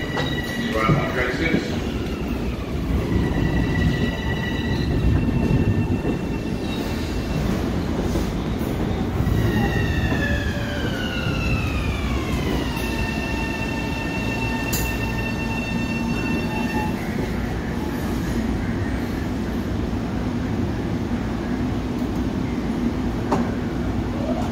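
Long Island Rail Road M7 electric train pulling in and braking to a stop: a steady rumble of wheels on rail, with a whine from the electric traction motors that falls in pitch as the train slows, then holds on a steady lower tone. A single sharp clank sounds partway through.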